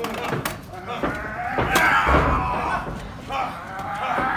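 A person's long, drawn-out shout in the wrestling arena, with a sharp knock partway through.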